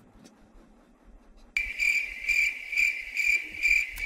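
Cricket chirping that starts abruptly about one and a half seconds in, after near-quiet room tone, and goes on as a steady high chirp pulsing about twice a second. It is the stock 'crickets' sound effect used for an awkward silence.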